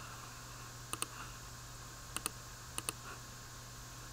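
Computer mouse clicking: a single click about a second in, then two quick pairs of clicks a little after two seconds and near three seconds, over a faint steady hum.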